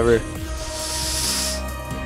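A steady hiss lasting about a second, over background music with held notes.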